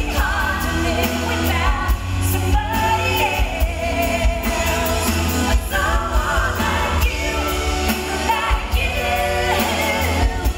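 Live pop-rock band performance: a woman's lead vocal with other women's voices singing harmony, over drums and bass.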